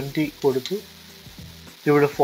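A voice speaking for under a second, then a short pause filled only by a steady low background hiss, with speech starting again near the end.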